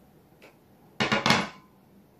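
A bamboo bow being set down, giving a sudden knock and clatter of about half a second, about a second in, with a faint tick shortly before.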